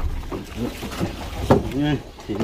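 People talking in short phrases, with one sharp knock about one and a half seconds in.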